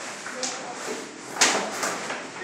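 Children's voices in a room, with a short sharp knock about half a second in and a louder clack about a second and a half in, as of toy pieces being handled.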